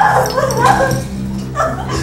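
A woman crying out and wailing in distress, in broken, wavering cries, over a steady low musical drone.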